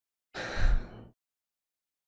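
A man's single sharp gasp close to the microphone, under a second long, with a low thump of breath on the mic at its peak.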